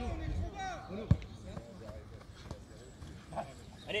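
A football kicked once, a single sharp thud about a second in, with faint shouting of players on the pitch around it.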